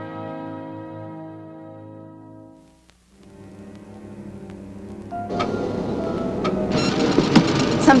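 Trailer soundtrack: a held orchestral chord fades away over the first three seconds. After a brief lull, a low rumble swells into a loud, rising roar with sustained tones over it.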